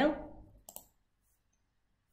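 A single computer mouse click, short and sharp, under a second in.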